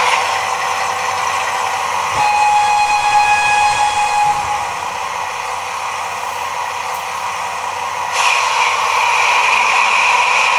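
Digital sound decoder of a Roco H0 model of the Class 288 (V188) double diesel locomotive, played through its loudspeakers. A horn blast with several tones sounds for about two seconds, starting about two seconds in, over a steady hissing running sound that grows louder near the end.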